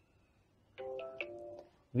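Smartphone notification chime for an incoming WhatsApp message on a Nexus 6P: a short tone of about three stepped notes, starting about a second in and lasting under a second. The message arrives with sound only and no notification shown, as set by the 'no full screen interruption or peeking' level.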